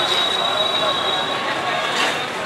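Busy market-street din of crowd voices and passing traffic, with a thin, steady high-pitched squeal that stops about a second and a half in.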